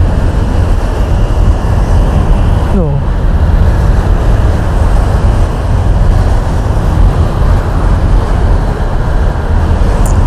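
Steady, loud wind and road rumble on the action camera while riding a motorcycle through traffic, with the motorcycle's engine running under it. A brief exclaimed "duh" about three seconds in.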